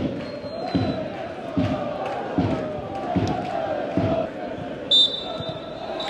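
Football stadium crowd chanting over a supporters' bass drum beating steadily, about one beat every 0.8 s. About five seconds in, a referee's whistle blows a short, shrill blast.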